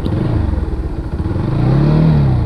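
Motorcycle engine running under way, its pitch rising and easing off twice as the throttle is worked.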